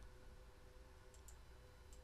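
Near silence with a faint steady hum, and a couple of faint clicks a little over a second in: a computer mouse being clicked.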